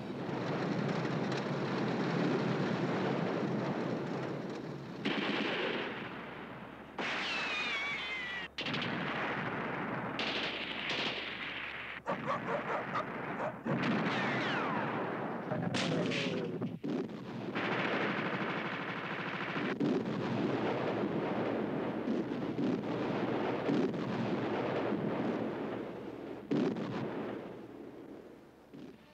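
Battle soundtrack of sustained rattling machine-gun and rifle fire, changing abruptly at several edits, with falling whistles at about seven seconds in and again past the middle.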